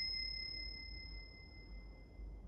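The fading ring of a single bell, dying away slowly, with the higher of its two clear tones lasting longest.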